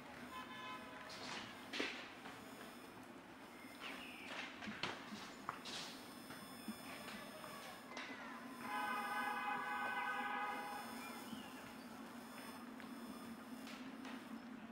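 Outdoor city park ambience: a steady low hum with scattered clicks and short chirps. About two-thirds of the way through, a held pitched sound, the loudest thing here, lasts about two seconds.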